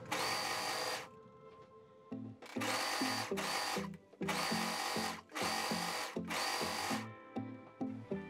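An overlocker (serger) running as it stitches knit fabric, in several bursts of about a second with short pauses between, stopping near the end. Background music plays underneath.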